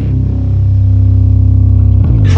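Loud heavy metal music: a low guitar and bass chord held steady, with no vocals.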